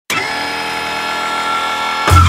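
Steady buzzing electronic drone of an intro sound effect. It starts abruptly right at the beginning and holds without change.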